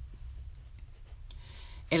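A pause in spoken reading: a steady low hum of room or recording noise with a few faint small ticks, before a voice begins a Spanish word at the very end.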